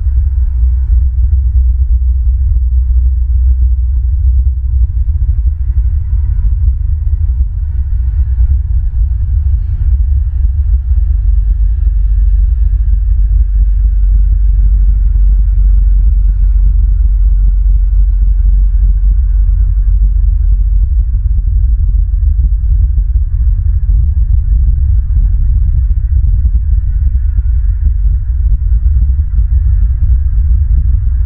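Loud, steady low rumble of wind buffeting the outdoor camera's microphone, with little sound above it.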